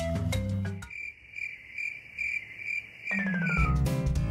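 Background music breaks off about a second in and a cricket chirps steadily, about two or three chirps a second. Near the end the music comes back in with a falling run of notes.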